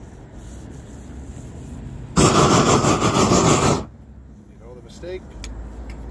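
Propane roofing torch turned up to full blast for about a second and a half, a loud roar that cuts off suddenly, used to melt the asphalt at a cap sheet seam.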